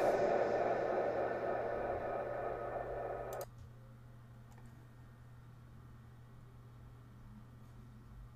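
The long reverb-and-delay tail of a man's voice from a monitored mic, ringing on and fading slowly, then cut off abruptly about three and a half seconds in as the effects are switched off. After that there is only a faint, steady low hum and a faint click.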